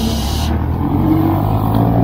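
Engine of a jeepney-style passenger vehicle running just ahead of a bicycle, a steady low drone. A short rush of hiss comes at the very start.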